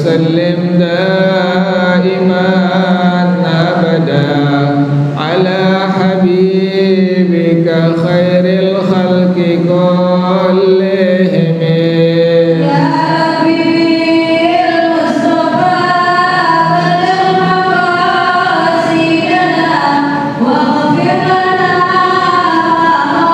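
A man singing a melodic Arabic chant into a microphone, with long held notes that bend and ornament. About halfway through, the melody climbs to a higher register.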